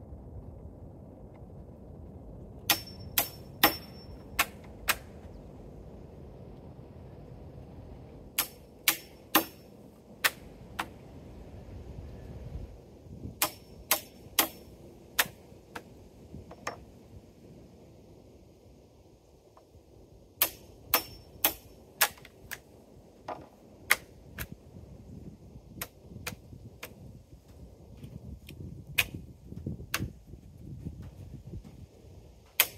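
Hammer striking a chisel to clean up mortise notches in a white oak timber: groups of five to seven sharp blows, about two a second, with pauses of a few seconds between groups. Some blows leave a brief metallic ring.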